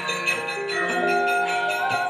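Javanese gamelan accompanying a wayang kulit performance: struck bronze metallophones ringing in overlapping, sustained tones with a steady pulse of new strokes.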